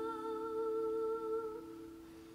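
A woman singing one long held note in a slow ballad over a steady lower note. Her voice fades out near the end.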